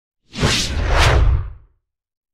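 Title-card whoosh sound effect over a deep low rumble, sweeping through twice and fading out within about a second and a half.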